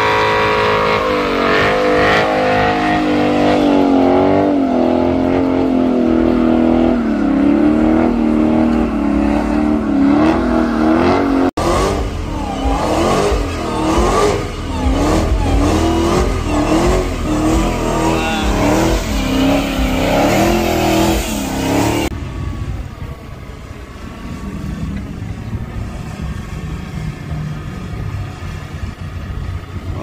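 Dodge Charger engines held at high revs during burnouts, the pitch wavering as the throttle is worked. After a cut about twelve seconds in, a second Charger revs up and down in quick repeated pulls. The engine sound stops about 22 seconds in, leaving lower background noise.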